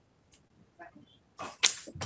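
A short rustling whoosh about one and a half seconds in, the handling noise of people moving things at a table near the microphone, after a second or so of near-quiet with a few faint sounds.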